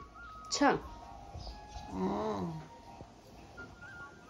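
A quick, loud falling whistle-like sweep about half a second in, then a short drawn-out vocal sound from a woman, rising slightly and then falling in pitch, around two seconds in. A thin background music melody plays throughout.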